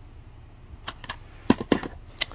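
Plastic DVD case being handled and set down against a shelf: a handful of sharp clicks and taps in the second second, the loudest about one and a half seconds in, over a faint steady hum.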